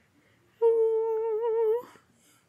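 A woman humming one steady, drawn-out "mmm" note for just over a second, starting about half a second in.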